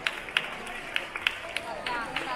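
Scattered, irregular hand claps from a crowd over a murmur of voices, the tail of a round of applause.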